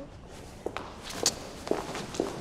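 Footsteps of people walking off, several steps about half a second apart.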